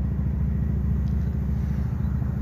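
Steady low rumble of an idling engine, with a fine even pulsing.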